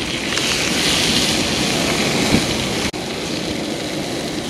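Steady hiss of a fish fillet frying in a cast iron skillet over a propane camp stove, with wind rumbling on the microphone. The sound drops sharply for an instant about three seconds in, then carries on more quietly.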